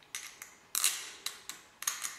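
Small metal clicks and scrapes as a square-necked bolt is pushed through a zinc-plated steel aerial mounting bracket by hand: about six short clinks, the longest scrape just under a second in.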